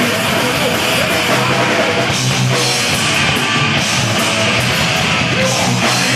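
Hardcore punk band playing live at full volume: distorted electric guitar, bass and drums in a dense, unbroken wall of sound.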